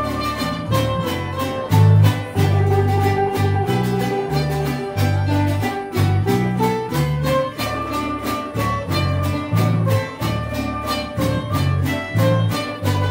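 Small acoustic string band playing a lively tune: a double bass walks through low notes changing about twice a second, guitars and a small four-string guitar strum a steady beat, and a sustained melody line sings above them.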